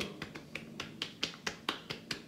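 Hands patting aftershave onto a freshly shaved face: a quick run of light, sharp slaps, about four a second.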